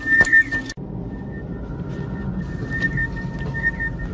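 Sci-fi motion tracker pinging: short high electronic blips ride on a steady high tone over a low rumble. The sound cuts out briefly a little under a second in.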